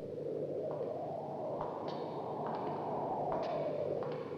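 Footsteps of two men walking along a stone prison corridor, each step echoing briefly, about one step every second or less, over a steady background hiss.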